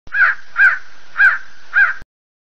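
Crow cawing four times, about half a second apart.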